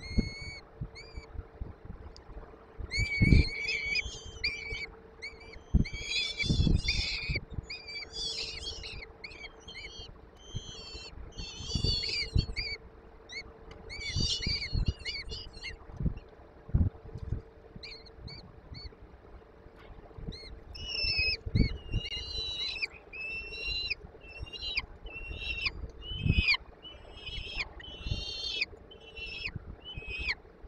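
Peregrine falcon chicks begging at feeding time with bursts of shrill, high-pitched calls, many in quick series. Dull knocks and scrapes come from the birds moving in the wooden nest box.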